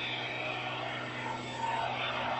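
Industrial wastewater-treatment equipment running: a steady mechanical drone with a constant low hum, from the dissolved-air flotation unit and its pumps.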